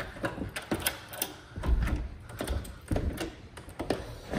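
A door knob and wooden double doors being handled: scattered clicks and rattles, with a few dull knocks.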